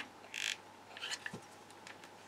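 Faint sounds of handling a hot glue gun and paper cut-outs: a short scrape about half a second in, then a few light taps and clicks.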